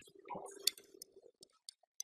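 Billiard balls clicking together and clacking onto the table's cloth-covered slate as they are picked up by hand and set back in place. The sharpest clack comes about two-thirds of a second in, followed by a few lighter clicks.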